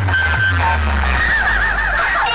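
Loud DJ remix music from a large speaker-box sound system, with heavy bass and, from about a second in, a high warbling tone that swoops rapidly up and down.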